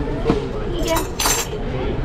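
A metal fork clinks and scrapes against a salad bowl twice, about a second in, over background voices.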